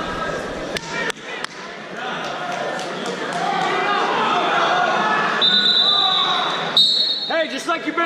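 Voices chattering in a large gym hall, with a few sharp thumps about a second in. From about five and a half seconds in, a high whistle is blown and held for about two seconds with a short break, and then a man starts shouting near the end.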